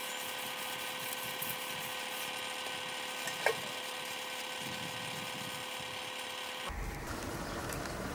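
Kitchen knife cutting dried fish on a wooden board, with one sharp tap of the blade about three and a half seconds in, over a steady machine-like hum.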